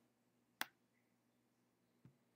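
A single sharp computer mouse click about half a second in, against near silence.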